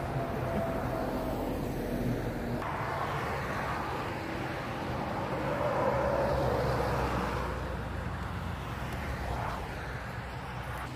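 Motorway traffic passing close by: diesel trucks and a coach drive past with engine hum and tyre noise, swelling to its loudest as the coach goes by about six seconds in.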